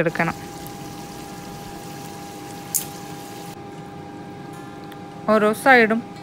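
Chicken pieces cooking in oil and their own juices in a pot, a steady simmering sizzle with a faint steady hum under it. A brief tick about three seconds in.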